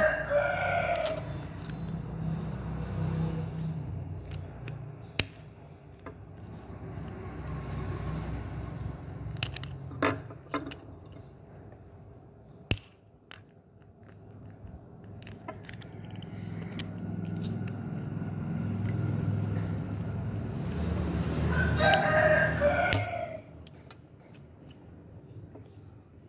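A rooster crowing at the very start and again about 22 seconds in, over a low background rumble. In between, a few sharp single clicks from a small screwdriver working on the plastic housing of a mini mist sprayer.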